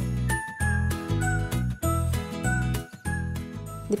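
Background music: a tinkling, bell-like melody over a bass line, the notes changing about twice a second.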